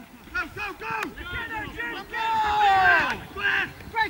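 Men's voices calling and shouting across a football pitch during play, with one long, loud shout about halfway through that falls in pitch.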